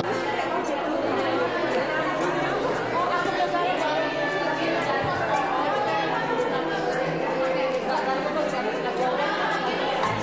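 Chatter of many people talking at once in a room: overlapping voices with no single clear speaker, at a steady level.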